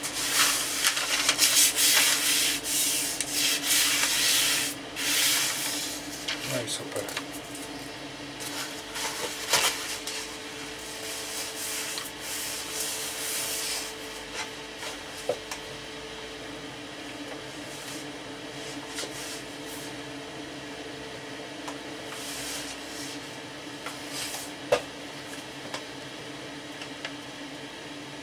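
Thin paper wood-grain veneer rustling as it is laid over a chipboard speaker cabinet, then a hand rubbing it flat against the panel. It is loudest in the first five or six seconds, with scattered rubbing strokes until about halfway and only occasional light touches and clicks after that.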